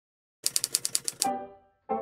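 Typewriter-like clatter, about eight rapid keystrokes in under a second, followed by two ringing musical notes that die away: a short logo sound sting.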